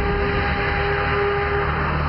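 A steady low synth drone under a hissing wash of noise, with a held higher tone that fades out near the end: the ambient music bed of a Weather Channel station ID.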